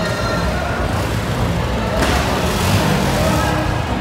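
Busy nightlife-street ambience: music from the open-air bars and crowd voices over a steady low rumble, with a louder rush of noise in the second half.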